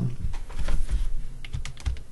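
A handful of irregular clicks from computer keyboard keys being pressed, with dull low knocks on the desk under them.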